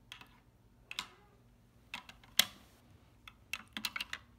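A small plastic scooper clicking and scraping against the bowl of a plastic toy toilet as it is swirled around in water: a few irregular sharp clicks, the loudest about two and a half seconds in, then a quick flurry of clicks near the end.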